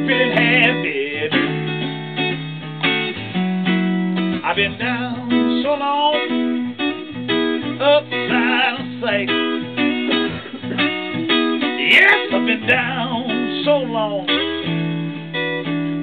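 Electric guitar playing a slow blues instrumental break: single-string lines with bent, wavering notes over repeated low notes.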